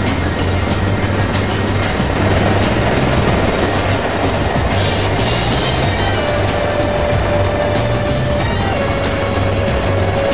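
Helicopter cabin noise in flight: a loud, steady drone of engine and rotor with a fast, regular beat running through it. Music with long held notes plays over it.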